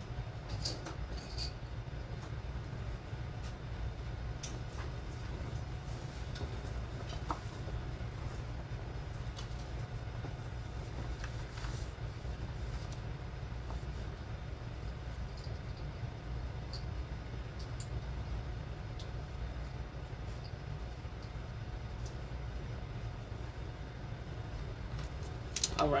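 Steady low rumble of room background noise, with a few faint clicks and rustles from clothing being taken off and put on a dress form.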